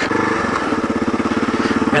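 Kawasaki KLR650's single-cylinder engine running at a steady cruising speed, its rapid, even firing pulses holding one pitch.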